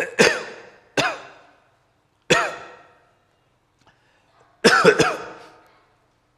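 A man coughing in a string of separate coughs: a quick pair at the start, single coughs about one and two seconds in, and a harder double cough near the end, each dying away quickly.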